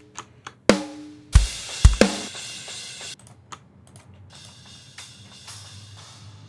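Sampled drum kit from The Fairview Kit library playing a groove. Loud drum hits come in the first half, with kick strokes and a crash cymbal about a second and a half in. From about three seconds on the sound is quieter and thinner, mostly cymbals, as single mic channels of the kit are soloed.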